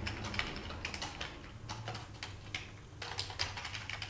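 Rapid, irregular typing on a beige full-size computer keyboard, its keys clicking over a low steady hum.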